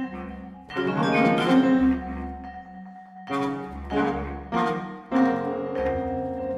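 Contemporary chamber sextet of flute, clarinet, saxophone, trombone, piano and vibraphone playing a sparse passage. About five sudden loud chords each ring out and die away, with a quieter stretch in the middle.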